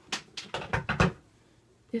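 Handling noise: a quick run of light clicks and taps, about half a dozen within the first second, then quiet until a word of speech at the end.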